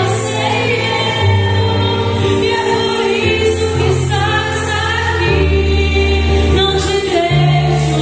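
A woman singing a song into a microphone through a sound system, over an accompaniment of held bass notes that change every second or two.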